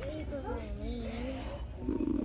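A quiet, drawn-out voice wavering slowly up and down in pitch without clear words.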